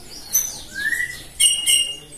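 Birds chirping: a few short, high-pitched calls, with a rising whistle about a second in and two quick calls near the end.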